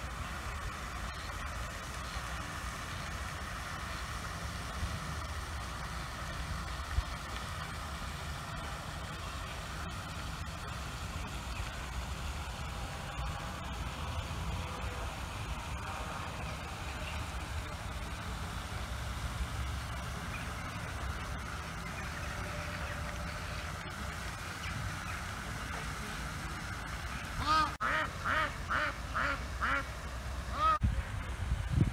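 A steady low background rumble, then near the end a duck quacks in a quick run of about six loud quacks.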